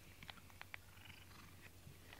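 Faint purring from a cat being brushed with a rubber-bristled grooming brush, with small soft ticks and a brief light rustle of the bristles on its fur.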